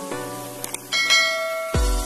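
Electronic background music of a subscribe end-screen: pitched notes, then a bright bell-like chime about halfway through, and a bass beat that comes in near the end.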